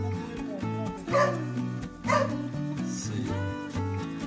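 Background music with a dog barking twice, about a second apart, the barks louder than the music.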